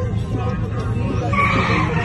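A drift car's tyres squealing and skidding on asphalt, setting in about a second and a half in, over a car engine running.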